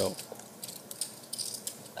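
Poker chips clicking as they are handled and stacked on the table, a run of light, irregular clicks.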